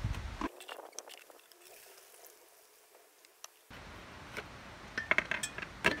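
Light clinks and knocks of a plastic funnel, ceramic jug and plastic bottle being handled while apple juice is bottled. There is a quiet stretch in the first half, then several quick knocks near the end.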